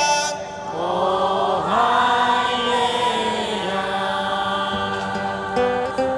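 A man's sung note ends, then voices sing a slow, held melody together, a crowd singing along. Near the end a nylon-string classical guitar starts picking single notes again.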